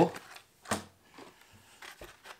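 Blister-packed fishing lures on cardboard cards being handled: one sharp tap of the package about a third of the way in, then light rustling and clicking of cardboard and plastic as it is turned over.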